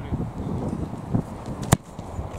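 A football struck hard once near the end, a single sharp smack of boot on ball, over low, uneven outdoor noise.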